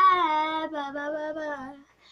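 A young girl singing unaccompanied, holding long notes through one phrase that stops just before the end.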